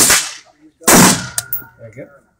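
Two gunshots about a second apart from other shooters firing nearby, each dying away quickly, with a short high metallic ring after the second.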